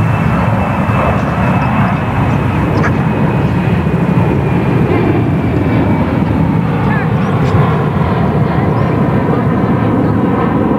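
Airplane engine noise from a passing aircraft: a loud, steady rumble with a faint high whine that slowly falls in pitch.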